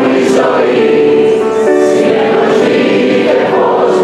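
A concert audience singing along in unison, many voices together over the band's acoustic accompaniment.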